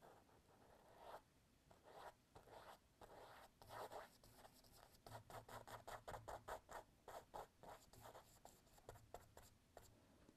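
Faint scratching of a small paintbrush stroking across the painted mural surface. The strokes come quicker and closer together from about halfway through, several a second.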